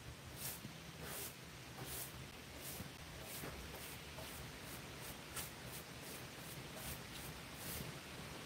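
Faint scratchy strokes of a stiff hand brush sweeping sawdust off a freshly sawn, wet wood slab, about two strokes a second, coming quicker in the second half.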